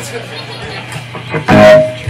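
Electric guitars through stage amplifiers between songs: a low steady amp hum, then a loud single note or chord struck about one and a half seconds in and held briefly.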